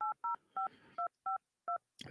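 Phone keypad touch-tones (DTMF) as a number is dialed: six short two-note beeps at uneven spacing.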